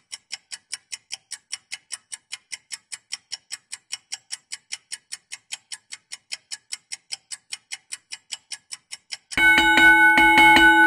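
Countdown-timer sound effect: a clock ticking evenly, about four ticks a second. Near the end the ticking stops and a louder ringing chime with several held tones sounds, marking time up.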